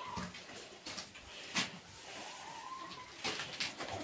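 Faint cow-shed sounds: scattered knocks and rustling of cattle moving and feeding in their stalls, with one short, faint whine about halfway through.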